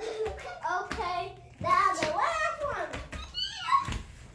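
Children's wordless, high-pitched calls that rise and fall in pitch as they imitate an animal, with a few sharp claps or knocks among them.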